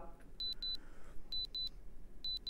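Electronic countdown beeps: short high double beeps, about one pair a second, twice, marking the on-screen price countdown running out.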